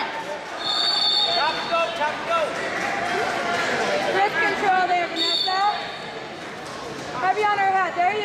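Several voices shouting and calling out in a gym, overlapping, with two short high steady tones, one about a second in and a shorter one about five seconds in.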